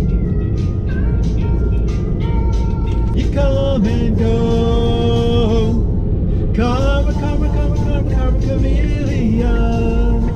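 A pop song playing on the car radio, a voice holding long sung notes, over the steady low road rumble heard inside the cabin of the moving car.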